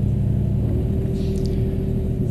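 Komatsu Dash 5 hydraulic excavator's diesel engine running steadily. About two-thirds of a second in, its note shifts and a steady higher hum comes in and holds.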